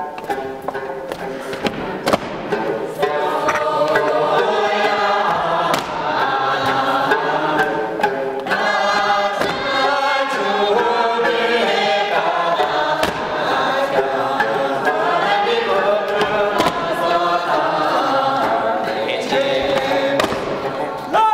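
Many voices singing together in a reverberant church hall, with a few short, sharp knocks through the song.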